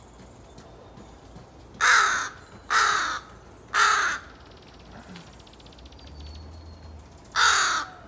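American crow cawing: three caws in quick succession about two seconds in, then a fourth near the end.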